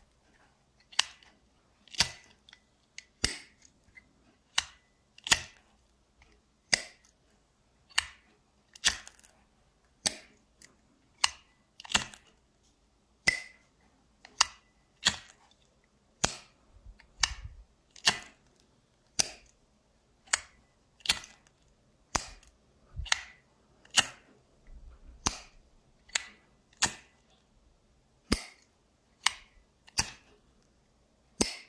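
Vintage Flamidor Parisien petrol lighter being lit and put out again and again: a steady series of sharp metallic clicks, about one a second, from the lid snapping open and shut and the thumb striking the flint wheel. It lights on every try, ten out of ten.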